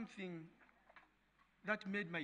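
A man's voice speaking, with a pause of about a second between phrases.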